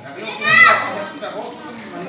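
Children's voices: one child calls out loudly with a rising-then-falling pitch about half a second in, followed by quieter background chatter.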